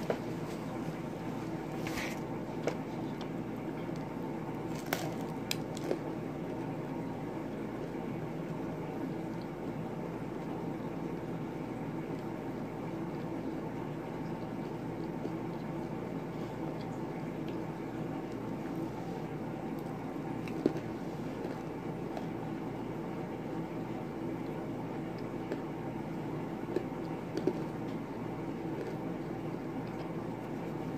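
A person quietly chewing pizza with occasional small mouth clicks, over a steady low background hum.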